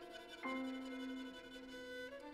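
Violin and grand piano playing a soft, slow passage of a violin-and-piano sonata: long held notes, with a new note entering about half a second in.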